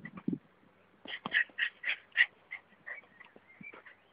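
A quick run of about six short, high-pitched animal calls, followed by a few fainter ones, with a low knock or two just before them.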